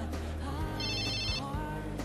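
Mobile phone ringing: a short electronic trilling ring, one burst just under a second in lasting about half a second, signalling an incoming call.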